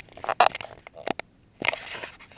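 Handling noise from fingers gripping and rubbing on the camera right at the microphone: an irregular run of scrapes and knocks, with a sharp click at the start, a louder knock about half a second in and a longer scrape near the end.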